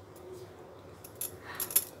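Faint background hum with a few light, sharp clicks and clinks about a second in.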